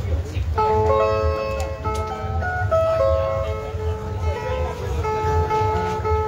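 Two Brazilian ten-string violas picking a short melodic instrumental phrase, the notes starting about half a second in, over a steady low rumble.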